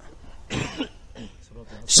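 A short, soft throat-clearing cough from a man, about half a second in, in a pause between spoken sentences.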